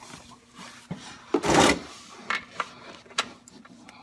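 A socket ratchet with an extension being picked up and fitted onto a transmission drain plug. There are a few light metallic clicks and a short scraping rustle about one and a half seconds in.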